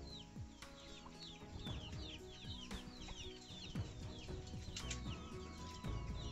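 Chickens calling in a yard: a busy stream of short, high, falling chirps, several a second.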